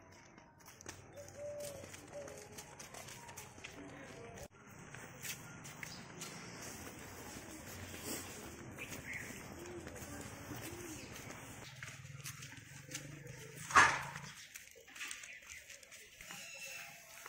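Street ambience: faint distant voices and short bird calls over a low steady hum, with one sharp knock about fourteen seconds in.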